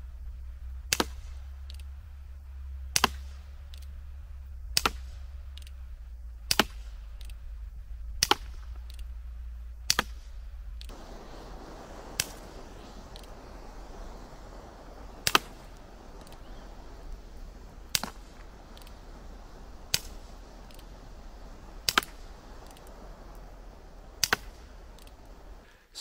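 Air pistol firing .177 pellets: about a dozen sharp shots, one roughly every two seconds.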